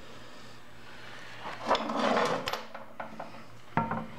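Metal motorcycle drive parts handled in a workshop: a scraping rub about halfway through, then a few light clicks and a sharp knock near the end.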